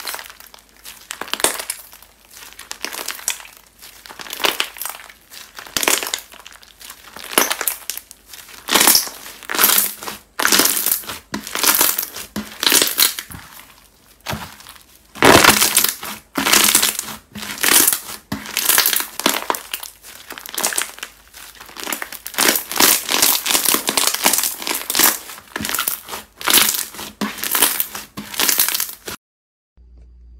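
Bead-filled clear slime being stretched, squeezed and kneaded by hand, giving loud, irregular bunches of crunchy crackling and popping. The sound cuts off abruptly just before the end.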